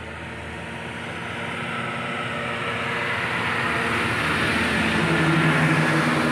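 A passing engine's steady drone, growing steadily louder throughout.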